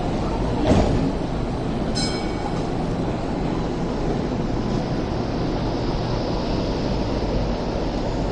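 Hong Kong light rail vehicle closing its doors and pulling away from a stop, over a steady low rumble. A short knock comes about a second in, then a brief chime about two seconds in, and a high whine sets in about five seconds in as the car moves off.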